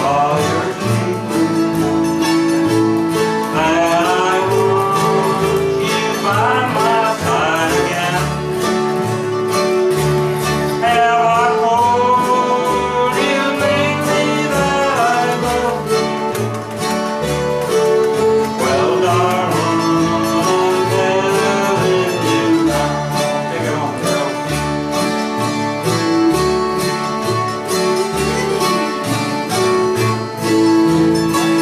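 Live acoustic country music: a steadily strummed acoustic guitar under a melody line with sliding, wavering notes.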